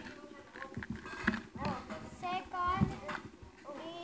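A child's voice making wordless, sing-song vocal sounds that glide up and down in pitch, with a few short knocks in between.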